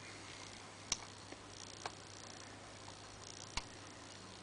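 Lock pick and tension wrench working the pins of a five-pin brass rim cylinder with serrated key pins and master pins: faint scraping with three sharp clicks, the loudest about a second in.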